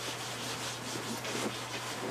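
A pen scratching and rubbing on paper in short, faint strokes as a word is written out by hand.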